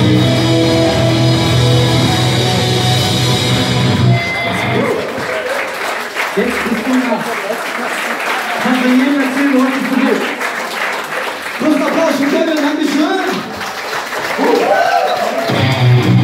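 A hardcore band's amplified guitars and drums hold a ringing final chord that stops about four seconds in; the audience then applauds and cheers while a voice talks over the PA between songs. Near the end the electric guitars come back in loudly.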